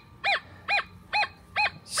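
Nokta Triple Score metal detector in Relic mode giving four short target beeps, each rising then falling in pitch, about two a second, as the coil is swept back and forth over the target. With iron reject set at one, this big piece of iron still sounds like a good target.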